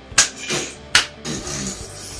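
Two sharp knocks, about three-quarters of a second apart, each short and clean.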